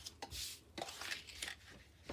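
Thin card being handled and laid down on a cutting mat: a few faint taps and a brief papery rustle about half a second in.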